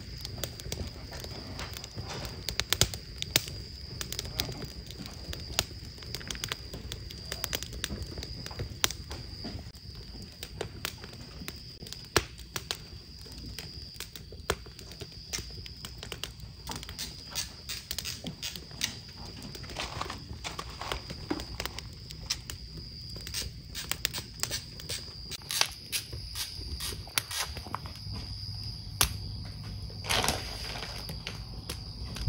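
Crackling wood fire: irregular sharp pops and snaps over a low rumble, with a thin steady high tone underneath.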